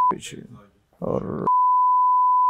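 Steady single-pitch censor bleep dubbed over speech, heard twice: one ends just after the start and the next begins about a second and a half in, with a brief bit of speech between them.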